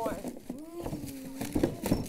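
A voice holding a long, steady vowel sound for about a second, followed near the end by a couple of sharp knocks, the loudest sounds here.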